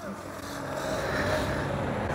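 A motor vehicle running on the road, a steady rushing noise with a faint hum that grows slowly louder.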